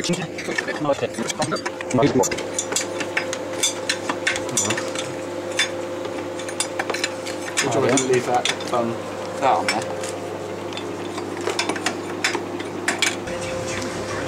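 Spanners and loose metal engine parts clinking and tapping in irregular short clicks as the belt and pulley gear is worked off the front of a 2.5 TDI V6 engine, over a steady low hum.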